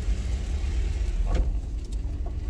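Steady low rumble of a car heard from inside its cabin, with a faint click about one and a half seconds in.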